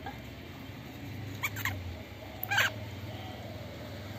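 A chicken giving short, high squawks as it is being slaughtered with a knife. Two come close together about a second and a half in, and one more a second later.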